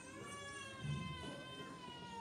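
A child's high-pitched voice holds one long drawn-out note for about two seconds, sliding gently down in pitch.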